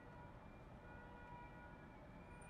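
Near silence: a faint low hum of the car's cabin, with a few faint steady tones.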